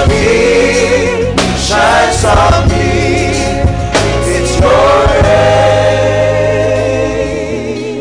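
Gospel worship chorus sung by many voices over a steady bass and keyboard accompaniment, with wavering sustained notes. It ends on one long held note that fades out near the end.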